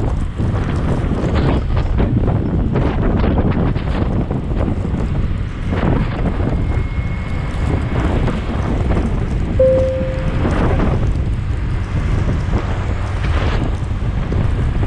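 Wind buffeting the action-camera microphone on a moving motorbike in traffic: a steady, loud rumbling rush with repeated gusts. A short, high beep cuts through about ten seconds in.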